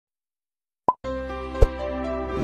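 Intro music: a short pop sound effect after almost a second of silence, then sustained synth-like tones with a deep thump a little later.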